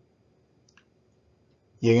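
Near silence with a single faint click a little under a second in; a voice starts speaking just before the end.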